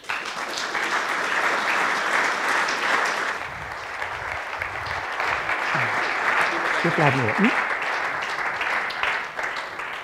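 A hall full of people applauding, steady at first and then dying away near the end. A man's voice is heard briefly partway through.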